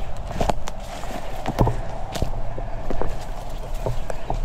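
Footsteps on a dirt path littered with sticks and dry leaves: a series of irregular crunches and snaps under a low rumble of wind or handling on the microphone.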